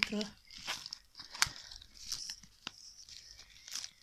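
A small mailing package being torn open and handled, its wrapping crinkling and tearing, with several sharp snaps; the loudest comes about a second and a half in.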